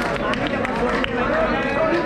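A crowd of men talking over one another, with no single clear voice.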